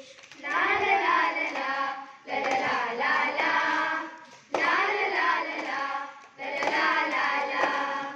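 A group of children singing a song together in phrases of about two seconds with short breaks between them, with hands clapping along.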